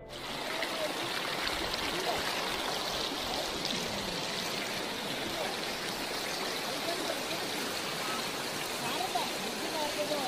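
River water rushing over rocks in shallow rapids, a steady, even rush.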